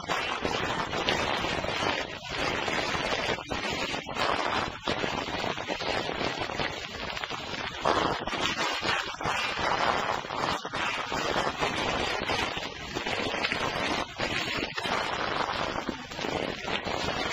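Heavy surface noise from a worn gramophone record: dense crackle and hiss, with no clear tune coming through it.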